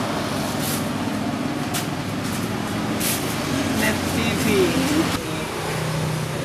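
Steady engine hum of street traffic with indistinct voices and a few clicks. The sound changes abruptly shortly before the end.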